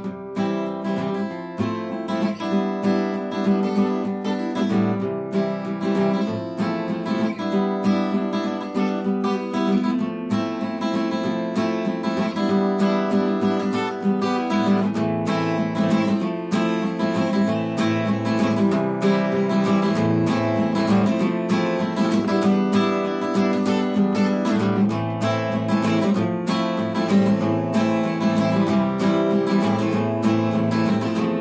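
Acoustic guitar music, plucked and strummed, playing steadily.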